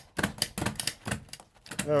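Foil-faced fiberglass duct insulation being folded and stapled around a sheet-metal duct: a quick, irregular run of sharp clicks and crackles that stops about a second and a half in.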